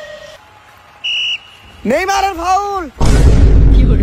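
Edited-in sound effects: a short electronic beep about a second in, then a drawn-out voice rising and falling in pitch twice, then a loud, noisy explosion-like blast lasting over a second, the loudest thing here.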